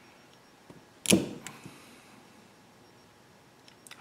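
Hand cutters closing once with a sharp snap on heavy-gauge wire, cutting the insulation to strip the conductor end, with a few faint clicks of the tool around it.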